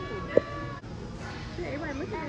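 High, wavering voices of young children, with one sharp click about a third of a second in.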